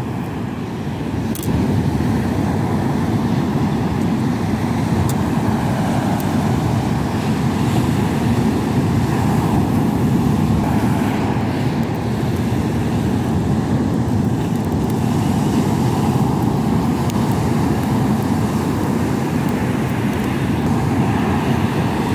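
Steady low roar of rough sea surf breaking on the beach, even in level throughout.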